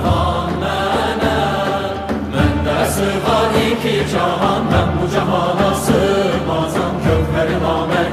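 Choir and a male lead voice singing a slow, chant-like melody with an orchestra of traditional instruments, over a steady low drone with occasional frame-drum strokes.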